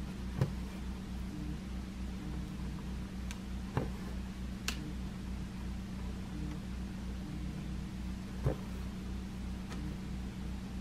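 A phone buzzing non-stop with incoming calls: a steady low buzz with a regular pulsing throb underneath, broken by a few faint clicks.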